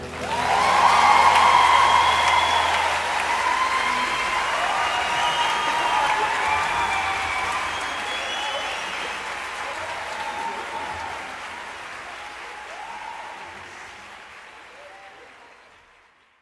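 Concert audience applauding and cheering at the end of a song, with shouts and whistles over the clapping; it swells in the first two seconds, then fades out gradually.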